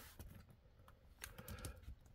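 A few faint clicks and light knocks of hands handling and posing a plastic Marvel Legends Red Hulk action figure.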